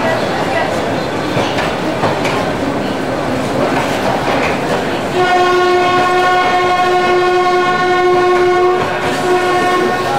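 Metre-gauge passenger coaches rolling past, their wheels clicking over the rail joints. About five seconds in, a locomotive horn sounds one steady note for about four seconds, then carries on more faintly near the end.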